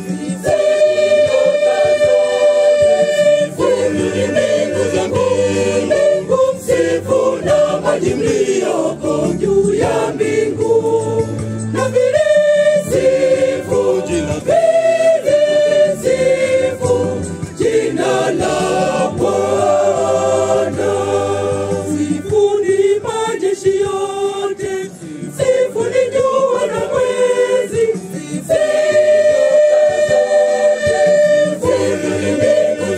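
Church choir singing a hymn in several voice parts, women's voices carrying the melody over the men's lower parts.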